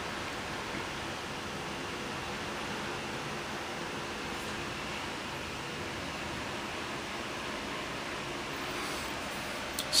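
Steady hiss of room noise with a faint low hum underneath, unchanging throughout.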